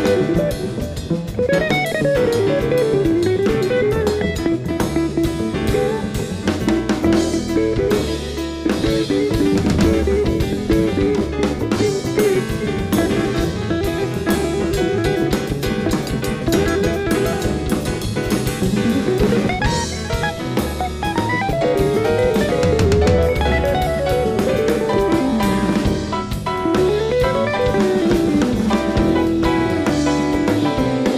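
Live jazz with electric guitar, upright double bass and drum kit. The guitar plays quick melodic runs that climb and fall over the bass and drums.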